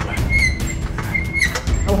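Hand air pump worked in strokes, pressurising a plastic bottle, with a short high squeak about once a second. Background music with a steady low beat runs underneath.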